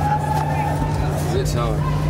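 A man's voice calls out one long drawn-out sound, then a few short wavering sounds, over a steady low motor drone.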